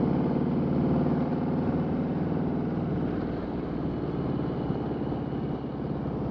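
Harley-Davidson Road King Special's V-twin engine running steadily at cruising speed, heard over wind and tyre noise.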